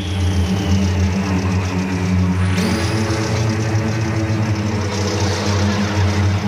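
An engine running steadily, its hum stepping up in pitch about two and a half seconds in.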